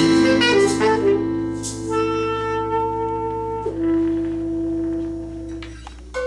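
Tenor saxophone ending a slow, melancholy improvised phrase: a few moving notes, then two long held notes, the last one fading out near the end.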